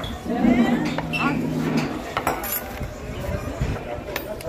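Crowded restaurant chatter with a few sharp clinks of plates and cutlery in the second half, as dishes of food are brought to the table.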